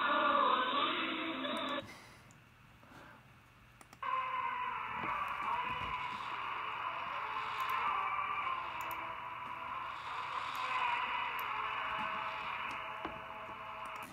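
Shortwave AM broadcast from Oman on 15.140 MHz playing through an SDR receiver's software, thin, band-limited radio audio over hiss. About two seconds in it drops out, and two seconds later it returns with the top end cut lower and duller, as the audio is switched to the second tuner and antenna.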